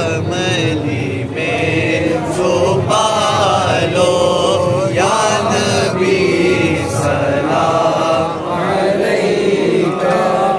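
Men's voices chanting an Urdu Salam, a devotional salutation to the Prophet, together in long drawn-out phrases, with brief breaths between lines.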